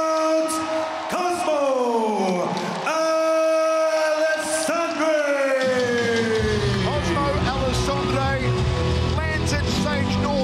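A ring announcer's voice stretching the winner's name into two long held calls that slide down in pitch, then music with a heavy beat and singing coming in about six seconds in.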